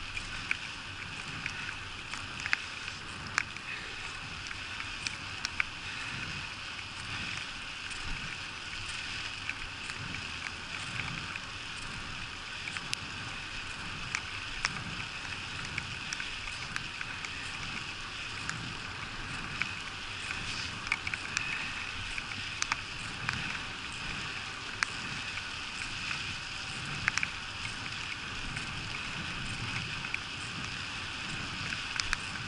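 Bicycle tyres hissing steadily on wet asphalt, with scattered sharp ticks of raindrops hitting the camera and a low wind rumble on the microphone.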